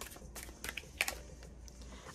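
A deck of oracle cards being shuffled and handled, a few short card clicks and flicks, the sharpest about a second in.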